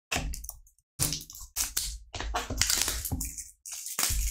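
Cellophane wrapping on a small trading-card box crinkling and crackling as it is picked up and handled, in an irregular run of crackles and rustles.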